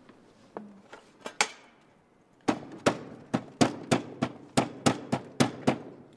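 A few light clicks, then a rubber hand stamp knocked down hard and repeatedly on the table and ink pad, about eleven sharp knocks at roughly three a second.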